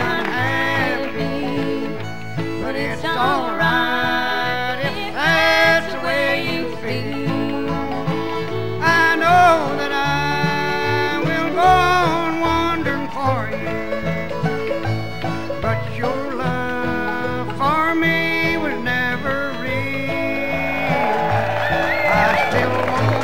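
Bluegrass band with banjo, guitar and upright bass playing an instrumental break in a country song at a steady beat, with a lead melody that slides between notes.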